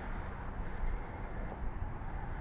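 Footsteps scuffing along a leaf-strewn dirt trail, coming and going irregularly, over a steady low rumble on the microphone.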